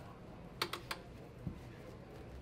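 Three quick light clicks, then one fainter click: hands and wrist knocking against a small bathroom sink basin.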